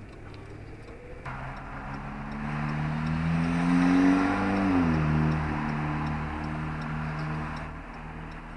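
Car engine heard from inside the cabin, pulling away and rising in pitch and loudness, then dropping sharply just before halfway as the automatic transmission shifts up, and running steadily after.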